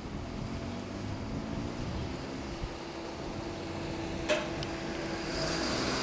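Honda CB1300 Super Bol d'Or's inline-four with an Akrapovič exhaust pulling away and fading into the distance, over steady street traffic noise. A single sharp click about four seconds in.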